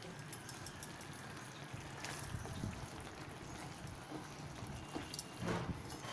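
Chayote and lentil kootu simmering in a steel pan: faint background noise with a few soft, scattered pops as the thick mixture bubbles.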